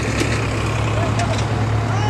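Sonalika DI 750 tractor's diesel engine running steadily with a low drone, with crowd voices mixed in.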